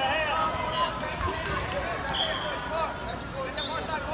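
Crowd of spectators and coaches at a wrestling tournament talking and calling out over one another, with two brief high whistle-like tones, one about halfway through and one near the end.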